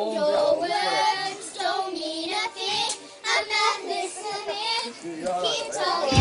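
Young girls singing together without backing music, their voices wavering up and down in pitch.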